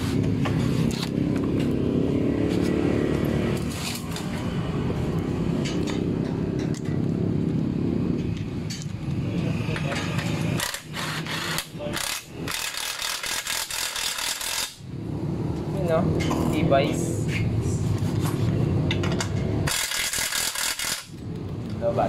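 Cordless impact wrench hammering the scooter's muffler mounting bolt tight in rapid rattling bursts: a longer run of a few seconds a little past the middle, and a short one near the end.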